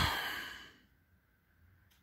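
A man's heavy sigh, a long exhale right on the phone's microphone, fading out within the first second, then near silence.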